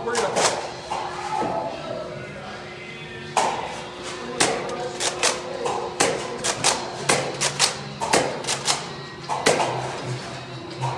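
Toy foam blasters being fired in play: a quick, irregular run of sharp snaps and thuds as shots go off and rounds hit walls and props. One hit comes right at the start, and the shots grow frequent from about three and a half seconds in.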